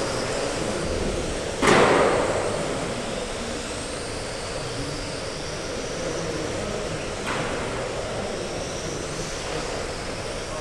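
GT12 1/12-scale electric RC cars racing on a carpet track in a large reverberant hall, their motors giving faint high whines that rise and fall as they pass. A single sudden loud crack comes nearly two seconds in, with a smaller one later.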